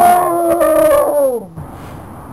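A long dog-like howl, holding one pitch and then dropping as it stops about a second and a half in.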